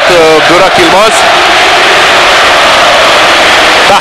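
Football stadium crowd noise, a loud steady wash from thousands of spectators, with a man's commentary voice over it for about the first second.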